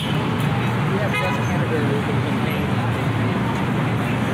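Busy city street-corner ambience: a steady rumble of passing traffic with people talking nearby, and a short pitched sound about a second in.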